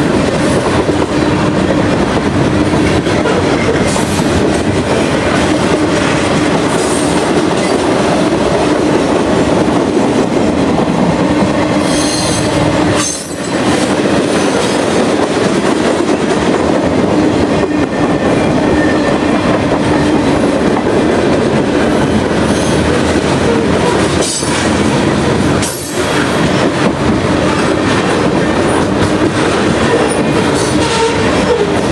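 Freight cars of a passing train rolling by close at hand: a loud, steady rumble of steel wheels on the rails with a steady low tone under it. The loudness dips briefly twice.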